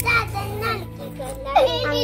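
Children's voices talking and calling out to each other, over a steady low hum.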